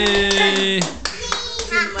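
Hands clapping quickly, about four claps a second, under a long drawn-out vocal cheer that glides down and ends about a second in; short vocal sounds follow over the continuing claps.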